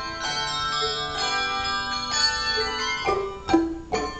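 English handbells rung by a handbell choir, playing a tune in ringing chords that are struck about once a second and left to sound. In the last second come several sharper, louder strokes.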